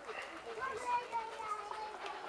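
Indistinct chatter of children's voices.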